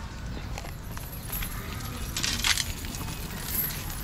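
Hanging metal chains of a chain curtain clinking and jangling as someone pushes through them, loudest about halfway through, with scattered lighter clinks around it.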